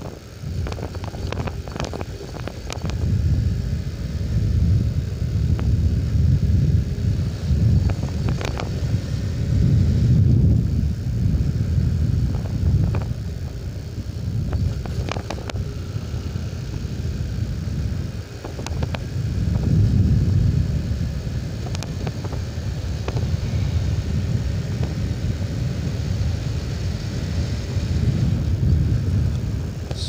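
Wind buffeting the microphone over the engine and road noise of a Honda CB150R single-cylinder motorcycle being ridden along a road. The rumble swells and fades every few seconds, with scattered sharp clicks.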